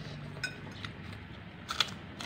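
A few light clinks of a metal spoon against a noodle bowl while eating, the sharpest one near the end.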